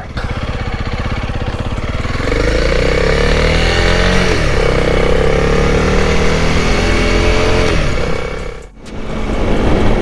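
Dual-sport motorcycle engine under way, picked up by a helmet-mounted microphone with heavy wind rushing over it. The engine note climbs about two seconds in and holds, eases off near the end, drops out briefly, then picks up again.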